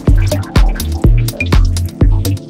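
Minimal house music: a steady kick drum about twice a second over a deep bass line, with short high electronic blips between the beats.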